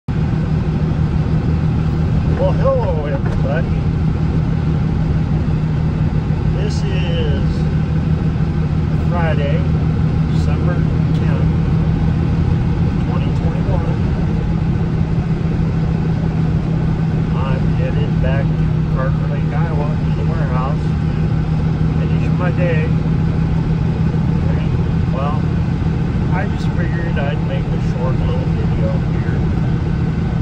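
A vehicle being driven, heard from inside the cabin: a steady low drone of engine and road noise that holds even throughout.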